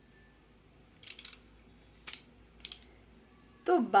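A handful of pencils knocking and rubbing together as they are gathered and a rubber band is wrapped around them: a short scrape about a second in, a sharper click about two seconds in, and another brief scrape soon after.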